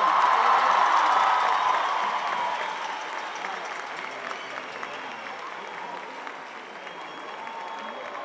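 Large concert audience applauding and cheering, loudest at the start and dying down over the first few seconds to softer, steady clapping.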